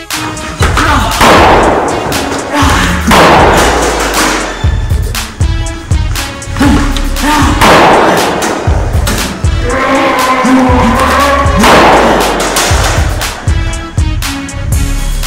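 Background music with a steady bass beat, overlaid by about four loud blast-like sound effects, each a sudden burst of noise that fades over about a second.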